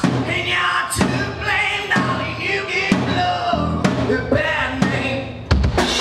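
Live rock band playing: a male lead singer sings into a microphone over drum kit, electric guitar and keyboards, amplified through a PA. Drum hits mark a steady beat, and there is a short lull about five seconds in before the band crashes back in.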